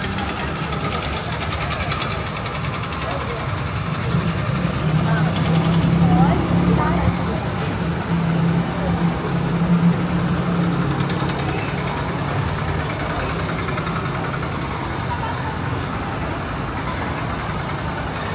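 Ambience on a covered pedestrian bridge: passers-by talking, over a steady low hum of road traffic engines that is strongest in the middle.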